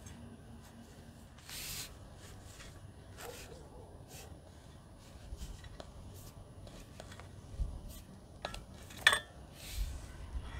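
Long-handled garden fork stirring loose soil to mix fertilizer into the top layer: soft scrapes and rustles with scattered light clicks, a brief swish near the start and the sharpest click about nine seconds in.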